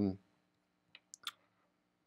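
Three faint, short clicks in quick succession about a second in, over a faint steady hum.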